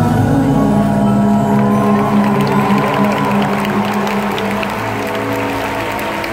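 Live band and singers closing a pop ballad on held, sustained notes, with a voice gliding over the chord partway through. Scattered audience clapping and cheers start coming in over the music as it winds down.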